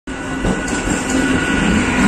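ICF-built MEMU electric multiple unit train arriving at a station platform, a loud steady rumble of wheels and running gear.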